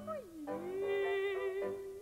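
A woman singing operetta slides her voice down in pitch, then holds a long note with vibrato over piano accompaniment.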